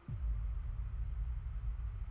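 A deep, low rumbling drone from the anime's soundtrack that starts suddenly with a brief falling sweep and then holds steady: a tense bass sting.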